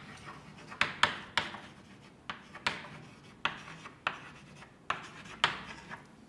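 Chalk writing on a blackboard: a string of about nine sharp taps and short scratchy strokes at an uneven pace as a line of text is chalked up.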